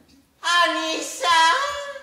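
A high-pitched voice singing drawn-out phrases in stylized kabuki fashion, starting about half a second in, with long held notes that waver in pitch.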